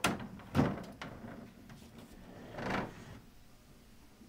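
Hard plastic knocks from a collapsible plastic bulk container: two sharp knocks at the start, a lighter one about a second in, then a longer clatter near three seconds as its sidewall is folded down onto the base.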